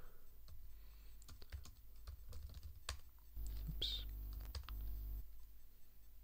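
Typing on a laptop keyboard: irregular key clicks as a terminal command is typed and retyped. A low hum sounds for about two seconds in the middle.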